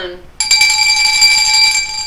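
A bell-like ringing tone with several high overtones. It starts suddenly about half a second in and lasts about a second and a half.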